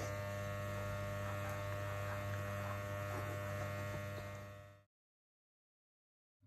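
Steady electrical hum with a low buzzy tone, with nothing else standing out. It fades away about four and a half seconds in, leaving dead silence.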